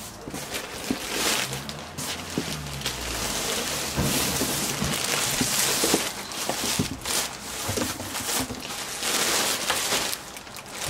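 Continuous rustling and crinkling of packaged clothes being rummaged through and handled, with a few small knocks.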